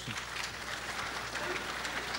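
An audience applauding steadily.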